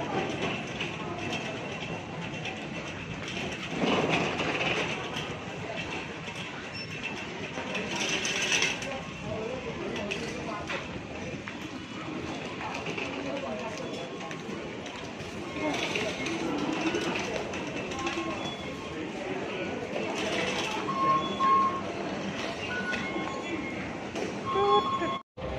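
Busy metro station ambience: many people talking and walking, with the rolling rumble of a wheeled shopping trolley on the tiled floor, and a few louder swells along the way.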